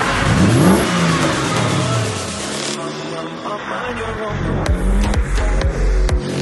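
Drift car engine revving up and falling back amid a broad noisy rush, cutting off suddenly about three seconds in. Then electronic music with a heavy bass beat.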